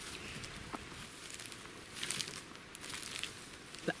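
Footsteps through dry dead bracken: quiet, irregular crunching and rustling, a little louder about two seconds in.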